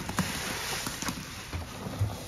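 Gloved hands squeezing and kneading a sponge soaked with thick soapy cleaning paste and suds: wet squelching and the crackling hiss of foam, with a couple of soft low thumps near the end.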